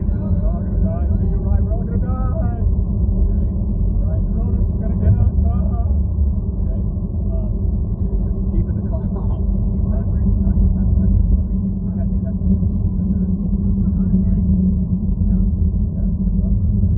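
Steady low rumble of engine and road noise heard from inside a moving car, with faint, indistinct voices over it.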